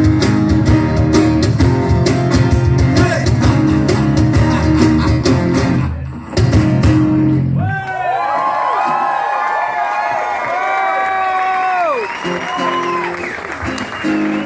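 Acoustic rock band playing strummed acoustic guitars with a steady beat. About eight seconds in, the instruments mostly drop out and voices carry on alone in long, sliding held notes.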